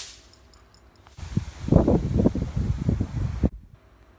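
Wind rumbling and buffeting on the microphone for about two seconds, cutting in and out abruptly.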